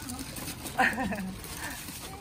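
A person's brief laugh about a second in, its pitch wavering and falling.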